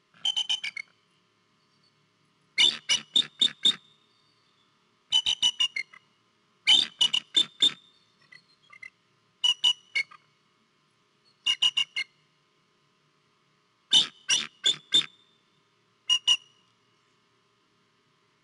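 Adult bald eagle calling close to the microphone: about eight bursts of high, piping staccato notes, four to six quick notes in each burst, with short pauses between the bursts.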